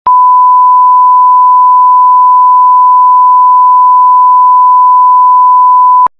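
A 1 kHz reference tone, the steady pure test tone laid under colour bars for setting audio levels. It is loud and unchanging, and stops abruptly at the end.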